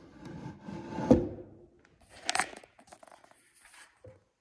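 A wooden beehive winter box being turned over and set down on a workbench. There is a sharp knock about a second in, then quieter scraping and rustling.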